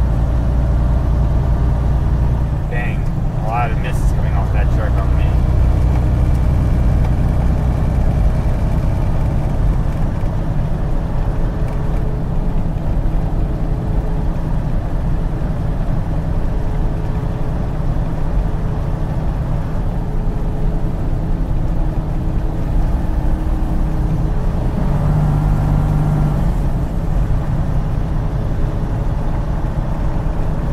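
Steady low drone of a semi truck cruising on the highway, heard from inside the cab: diesel engine and tyre noise running without a break.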